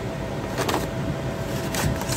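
A thick printed paper leaflet being handled and turned over, rustling with two short crackles, one under a second in and one near the end, against a steady background noise.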